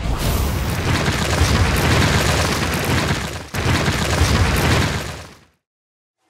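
Logo-reveal sound effect: a loud, boomy, rumbling rush of noise with fine crackle through it. It breaks off for an instant a little over three seconds in, surges again, then dies away to silence shortly before the end.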